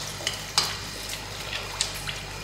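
A dollop of cauliflower vada batter frying in a shallow pan of hot oil: a soft steady sizzle with a few scattered crackles.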